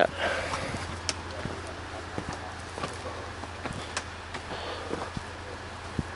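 Irregular footsteps and scuffs on loose dry dirt over a steady low hum.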